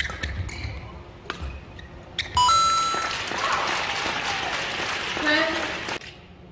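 Badminton racket strikes on a shuttlecock about a second apart, then a loud, brief high tone as the rally ends. A crowd cheers and claps for about three seconds, with a shout near the end.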